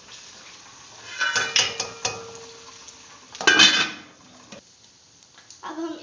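A spoon scraping and clanking against a metal cooking pot while onions are stirred, in two short bursts of clatter with a brief metallic ring, about a second in and again past halfway.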